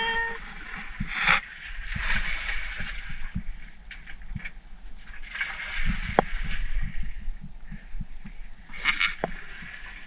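Hands picking through wet, dredged-up river grass and muck on a boat seat: soft rustling and scattered light knocks, over a steady low rumble.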